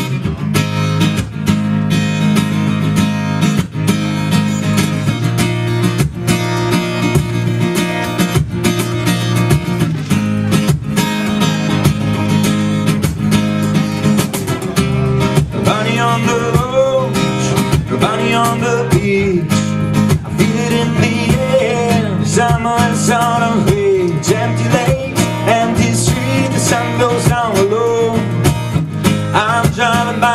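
Live acoustic guitar strummed in a steady rhythm, with a cajon and small cymbal keeping the beat; about halfway through a man's singing voice comes in over it.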